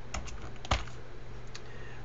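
A few computer keyboard key presses: a light tap, then a sharper keystroke about two-thirds of a second in, and a faint one later.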